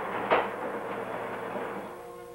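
Ride noise of a 1¼-ton four-wheel-drive truck ambulance in motion, heard inside the patient compartment: a steady rumbling hiss with one sharp knock about a third of a second in, easing off near the end.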